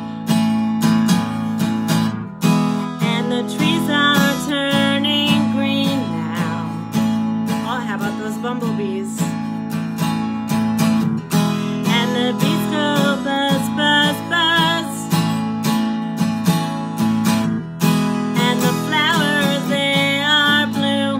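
A woman singing with vibrato over a strummed acoustic guitar, the chords keeping a steady rhythm throughout.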